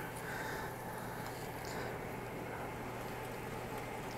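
Steady low hum with a faint even hiss: kitchen room tone, with no distinct sound standing out.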